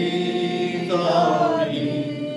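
Church congregation singing a slow hymn chorus unaccompanied, holding long notes and moving to a new note about a second in.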